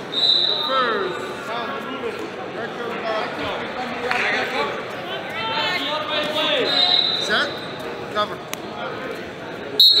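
Indistinct calling and chatter of coaches and spectators in a large school gym, with brief shrill whistle tones. The loudest is a sharp blast just before the end, typical of a referee's whistle starting the wrestlers again.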